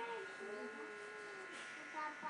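A pause in speech filled by a steady electrical buzz made of several thin high tones, with a faint wavering tone that slowly falls and fades in the first second and a half.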